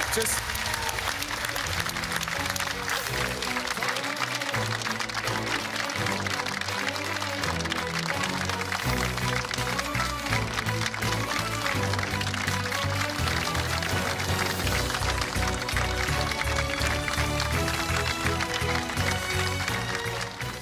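TV game-show closing theme music, its bass line coming in a few seconds in, over studio audience applause.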